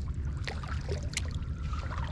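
Water trickling and gurgling against a kayak as it moves along a calm creek, over a steady low rumble. A couple of light clicks sound about half a second and a second in.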